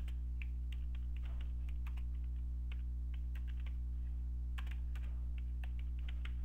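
Typing on a computer keyboard: a run of short, irregular key clicks, over a steady low hum.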